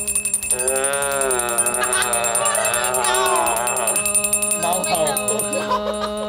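A woman holds one long, steady sung note into a microphone for as long as her breath lasts. For a few seconds near the start a second wavering sung line lies over it, and a fast, faint ticking runs underneath.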